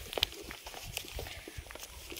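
Footsteps walking, a few soft, unevenly spaced steps.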